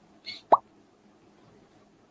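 A single short rising 'plop' sound effect about half a second in, the Quizizz lobby's pop as a new player joins the quiz.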